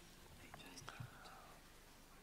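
Near silence: hall room tone with faint whispering and a couple of soft knocks.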